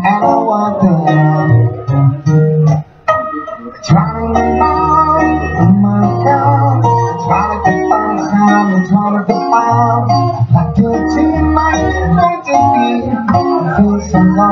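Live amplified acoustic guitar with a male voice singing, over sustained low bass notes; the music dips briefly about three seconds in, then carries on.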